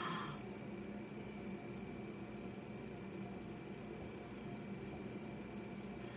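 Faint steady room tone, a low hiss with a light steady hum and no distinct sound events.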